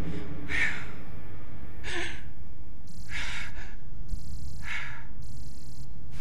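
A woman's heavy breathing: four audible breaths, roughly one every second and a half, over a low steady rumble.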